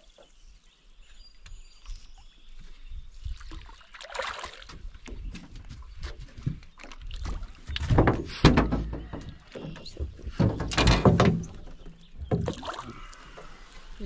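A hooked smallmouth bass splashing and thrashing at the surface beside a small boat, mixed with bumps and knocks on the boat. The sounds come in irregular bursts, loudest about eight and eleven seconds in.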